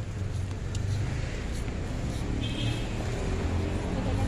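Street traffic noise: a steady low rumble of road vehicles with a haze of street noise, and a brief high-pitched tone about halfway through.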